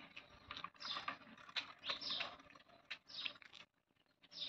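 Faint, irregular clicking and light rattling from a child's bicycle being ridden. The sound cuts out shortly before the end.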